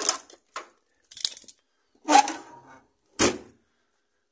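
A handful of separate sharp clicks and clatters from hands working at a plastic tow-hitch trailer socket. The loudest are a longer scrape-like clatter about two seconds in and a sharp knock just after three seconds.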